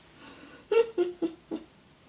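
A woman laughing briefly: four short, high-pitched bursts about a second in.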